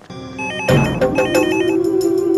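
Electronic telephone ringing, a rapid two-tone warble heard in two bursts, over background music that comes in loudly with a held note about two-thirds of a second in.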